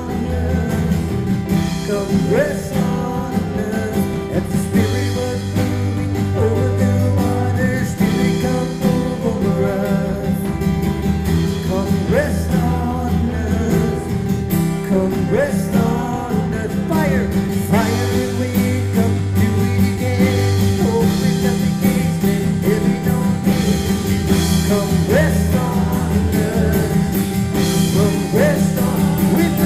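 Live worship band playing a slow song: acoustic and electric guitars, keyboard and drums, with a lead voice singing over them.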